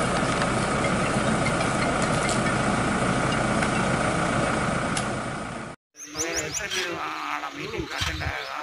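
A vehicle engine idles steadily, a deep rumble under a faint high hum. It fades and cuts off about six seconds in. After that, birds chirp and voices talk.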